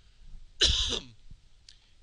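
A man coughing once, a short loud cough a little over half a second in, from a chest cold.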